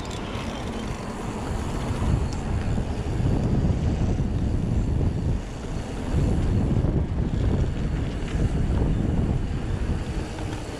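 Wind buffeting the action-camera microphone, with tyre rumble from a mountain bike rolling along an asphalt lane. The low rumble grows louder about two seconds in and dips briefly twice in the middle.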